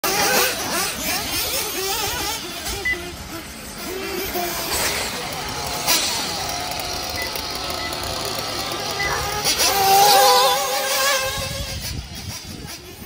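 Radio-controlled off-road buggies running on a dirt track, their motors whining and revving. About nine seconds in, one rises in pitch and holds a loud high whine before fading. Voices in the background.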